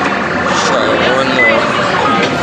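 Loud arcade din: electronic game-machine tones and jingles with short gliding beeps, over the chatter of a crowd.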